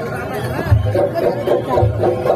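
Jaranan (jaran dor) troupe music: a deep bass drum beats about once a second, and a high repeating melody starts up less than a second in, over crowd chatter.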